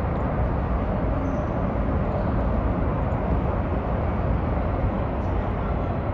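Steady rumble of road traffic from an elevated highway, an even noise heaviest in the low end with no single vehicle standing out.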